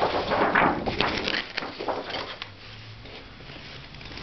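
A sheet of paper rustling and crackling as it is handled and laid over a painting. Dense rustle with sharp crinkles for the first two and a half seconds, then it goes quiet apart from a faint steady hum.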